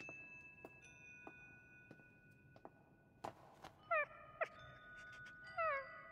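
A puppy's short, high whimpers, falling in pitch, about four seconds in and again near the end, after soft ringing chime tones with light clicks.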